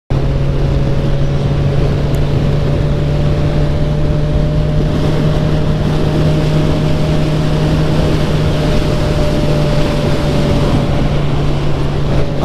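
Motorcycle engine running at a steady cruise, its note held level, over rushing wind noise on the microphone.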